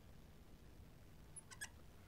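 Near silence: room tone, with a few faint, brief squeaks about one and a half seconds in from a marker on a glass lightboard.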